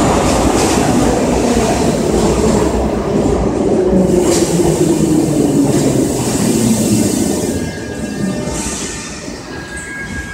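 Soviet-type 81-717M/714M metro train pulling into an underground station and braking to a stop: a loud rumble of wheels and motors with a whine that falls in pitch as it slows, dying down near the end. A thin steady high tone comes in near the end.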